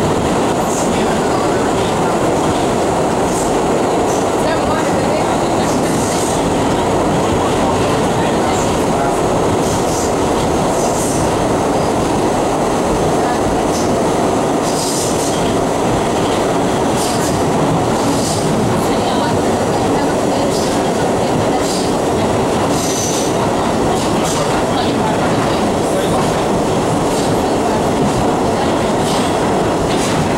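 Interior of a 1985 R62A New York subway car running at speed through a tunnel: a steady, loud rumble and rush from the wheels on the rails, with short high-pitched wheel squeals at irregular intervals.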